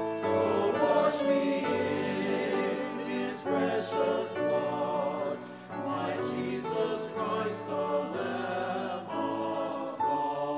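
Men's chorus singing in parts with piano accompaniment, with a brief drop in level between phrases about halfway through.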